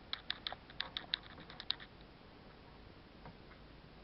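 A quick, uneven run of about a dozen light, sharp clicks over the first two seconds, then quiet room tone.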